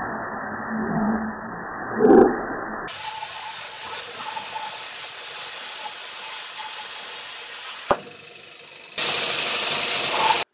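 Air plasma cutter (Lotus LTP5500D on 240 V) cutting eighth-inch steel plate: a steady hiss of the arc and air. A sharp click comes about eight seconds in, the hiss drops for about a second, then returns louder near the end.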